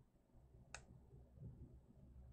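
A single mouse button click about three quarters of a second in, against near silence.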